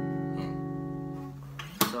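Acoustic guitar F-sharp minor 7 chord, struck once and left ringing, slowly fading. It stops shortly before a sharp click near the end.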